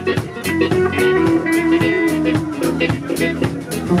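Live rock band playing: electric guitar over a drum kit keeping a steady beat.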